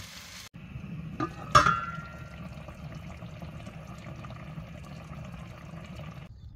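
Rabbit stew simmering in a pot on a gas hob, a steady bubbling hiss. About a second and a half in there is a sharp metallic clink that rings briefly, preceded by a lighter click.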